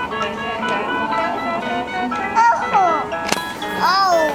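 Children's electronic toy laptop playing a simple beeping electronic tune, note after note. A high voice slides up and down about two and a half seconds in and again near the end, and there is a sharp click just after three seconds in.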